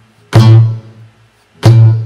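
Acoustic guitar's open A string struck together with a percussive palm hit that stands in for a bass-drum kick. It sounds twice, a little over a second apart, each time a sharp attack followed by a ringing low note that fades.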